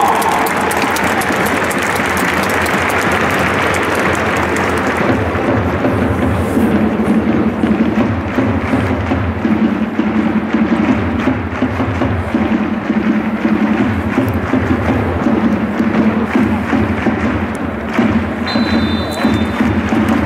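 Football stadium crowd applauding, and from about five seconds in a rhythmic drum beat with music from the stands.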